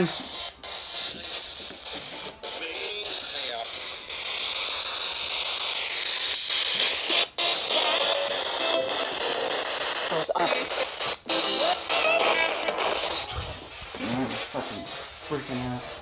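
Spirit box (ghost-hunting radio sweep scanner) running: a steady hiss of radio static with broken fragments of broadcast voices and music, cut by a few short dropouts.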